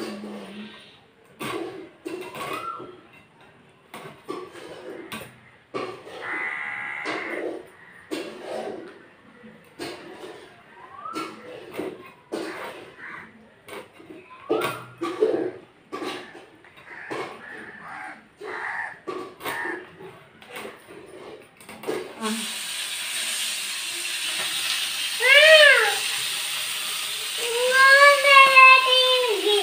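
Scraping and chopping of food against a boti, a curved blade fixed upright on a wooden base: a run of scratchy strokes and knocks. About three-quarters of the way through, a steady frying sizzle takes over.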